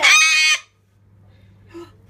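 A pet corella gives one loud, harsh screech of about half a second, which stops abruptly.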